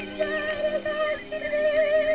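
A woman sings a slow melody in a high voice, holding long notes with a wide vibrato and pausing briefly for breath, over a steady orchestral accompaniment.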